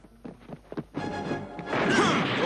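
Cartoon sound effects: a quick run of footsteps, then a loud crash of a door being smashed through near the end, with music.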